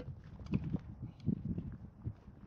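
A few dull knocks and scrapes, irregularly spaced, as stones and concrete blocks are handled on rocky ground.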